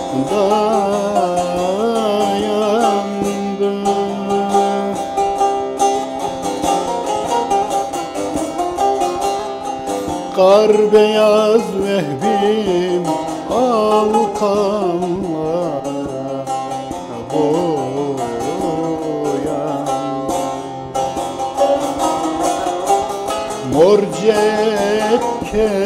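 Long-necked bağlama (saz) played with steady plucking and a ringing drone, with a man singing a Turkish folk song (türkü) over it in a wavering, ornamented voice.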